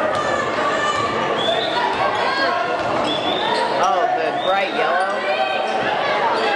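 A basketball being dribbled and played on a hardwood gym floor, with short high squeaks of shoes and a crowd talking, all echoing in a large gym.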